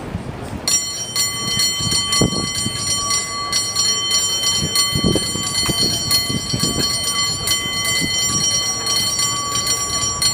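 San Francisco cable car bell rung by hand in a rapid, rhythmic contest routine. Its ringing tones start about a second in and run on unbroken, with many quick strikes.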